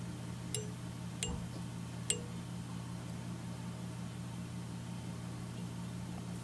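A steady low hum of room tone, with three faint light clicks in the first two seconds from handling the thread and tools at the fly-tying vise.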